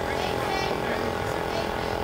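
Busy indoor hall ambience: background voices over a steady mechanical drone.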